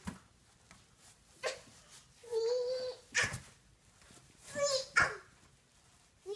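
A few short whining vocal sounds, one held steady for about half a second, between several light knocks.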